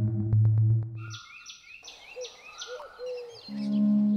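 Background music with a steady low drone that cuts off about a second in, then birds chirping in a quick run of five or so calls over faint outdoor ambience. Music comes back in near the end.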